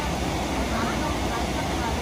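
Steady cabin noise of a Boeing 777-200LR airliner in cruise: an even, unbroken rush of airflow and engine noise.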